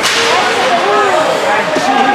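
A single sharp crack from the hockey play on the ice right at the start, with a short ringing tail. Spectators' voices chatter underneath.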